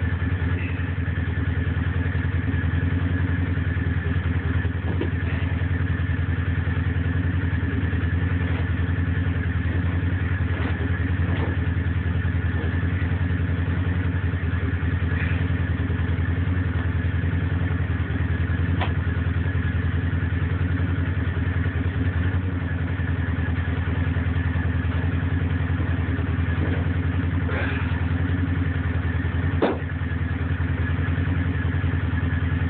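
A small petrol engine idling steadily, with a few sharp knocks now and then.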